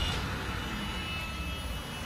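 1985 Mercedes-Benz 380SE's 3.8-litre V8 idling steadily, a low even rumble with a faint thin high whine over it.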